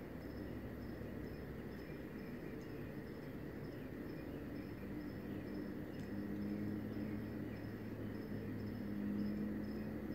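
A cricket chirping steadily, a short high-pitched chirp about twice a second, over a low steady hum that grows a little louder in the second half.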